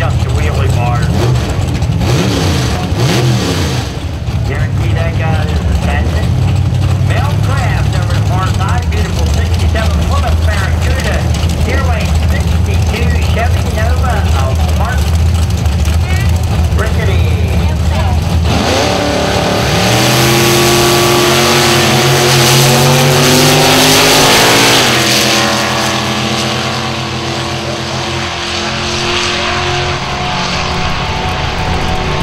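Two drag race cars idling with a deep low rumble at the start line, then launching hard about two-thirds of the way through: loud engines revving up, their pitch climbing and dropping back at each gear change, then fading as the cars run away down the strip.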